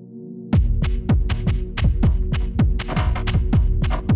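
Electronic music: a held low drone, then about half a second in a heavy beat drops in, with deep kick drums that fall in pitch, struck about three to four times a second over the drone.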